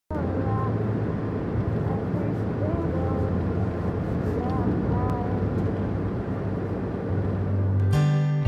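Steady low rumble of a coach bus's engine and road noise heard inside the passenger cabin, with faint snatches of voices now and then.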